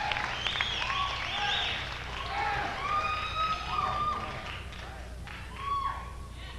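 Recorded live concert audience after a song: scattered cheering and whooping over applause, easing off near the end.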